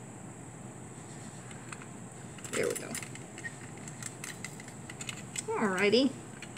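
Faint, scattered light clicks and rattles of a string loop and a metal spring-scale hook being handled as a rubber stopper is hung on it, with a brief hum from a voice near the end.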